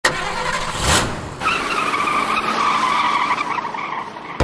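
Car sound effect: a sudden start, a rush about a second in, then a long tire squeal that falls slightly in pitch and fades.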